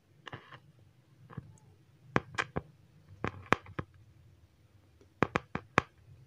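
Loudspeaker driven by a TDA7388 amplifier board whose input is being touched by a finger: a faint low hum with irregular sharp clicks and crackles in small clusters. The amplifier stays very quiet even with the input touched.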